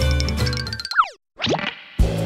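Bouncy children's background music stops about a second in. A cartoon boing-type sound effect follows: a quick falling pitch glide, a brief silence, then a quick rising glide.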